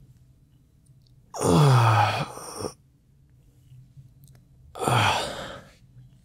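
A man sighs twice. The first is a long voiced sigh that falls in pitch, about a second and a half in. The second is a shorter, breathier sigh about five seconds in.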